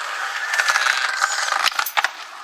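Skateboard wheels rolling over rough concrete, a steady rolling noise with a few light clicks near the end.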